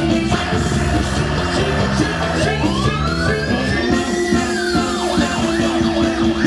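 Live band music with a steady beat. About two seconds in, a sliding siren-like tone rises for about two seconds and then falls away, followed by a few short swoops near the end.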